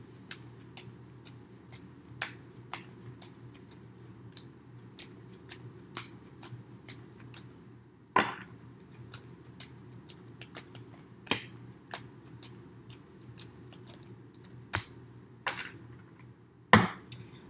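Tarot cards being shuffled by hand: soft, irregular clicks and riffles of card against card, with a few louder snaps as the deck is squared, over a low steady hum.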